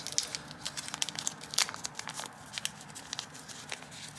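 Thin white wrapping crinkling as fingers unfold it from a small accessory: a run of irregular crackles and rustles.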